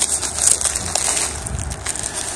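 Bubble wrap crinkling and rustling in irregular crackles as a hand grips it and pulls it back off a plastic sheet.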